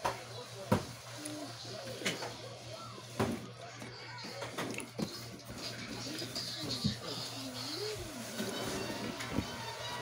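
Background music with a singing voice, heard faintly as from a television in the room, over a steady low hum. A few sharp clicks fall in the first half, the loudest about a second in.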